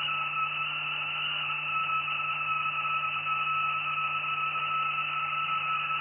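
Steady electrical hum with a thin, high-pitched whine above it, from a homemade high-voltage oscillator setup and a small AC fan running.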